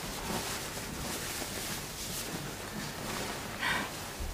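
Rustling of a white cotton dress shirt being handled and unfolded, with a short vocal sound from a person near the end.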